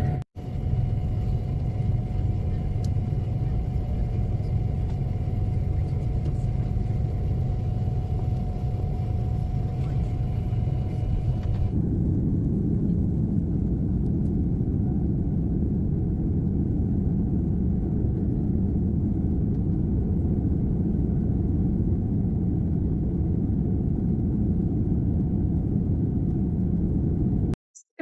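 Airliner cabin noise from jet engines, a loud steady rumble heard from inside the cabin. For the first dozen seconds, while taxiing, a thin steady high tone sits over it. Then it switches abruptly to a deeper, fuller rumble during the takeoff roll and climb-out.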